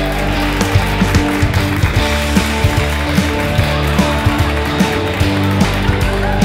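Rock music with a steady drum beat over sustained chords.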